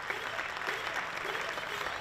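Audience applauding steadily, a dense crackle of many hands clapping.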